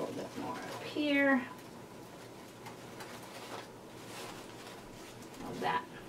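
A short voiced call about a second in, falling slightly in pitch, with a softer one near the end, over faint handling noise.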